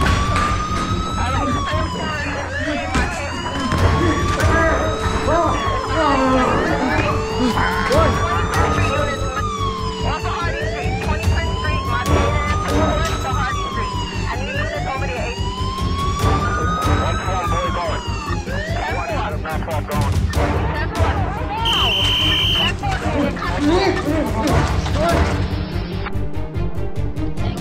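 Police siren wailing, each sweep rising and falling over about four seconds, over dance music with a steady beat. The siren stops after about twenty seconds, and a short high beep sounds near the end.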